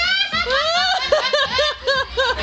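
High-pitched giggling laughter from an onlooker, ending in a run of short rising-and-falling giggles at about four a second.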